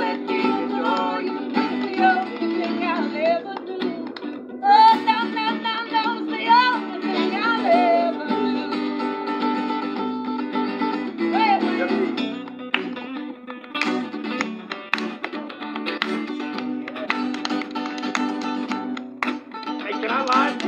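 Acoustic guitar strummed steadily, with a voice singing over it through the middle stretch.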